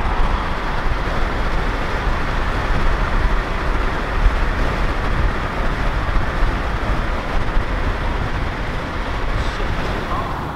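Steady road and wind noise of a car travelling at highway speed, heard from inside the car, with a strong low rumble.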